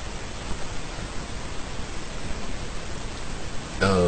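Steady, even hiss of background noise with no distinct events; a man's voice starts again near the end.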